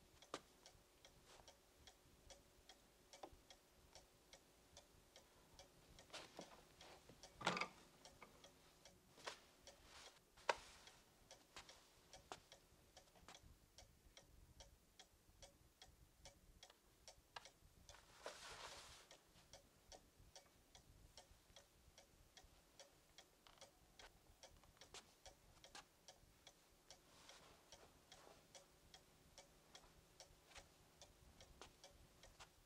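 Quiet, steady, regular ticking, about two to three ticks a second, with a soft knock about seven seconds in, a sharp click near ten seconds and a brief rustle around eighteen seconds.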